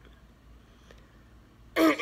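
A quiet room, then near the end a woman clears her throat once, loudly, part of the ongoing coughing of cystic fibrosis.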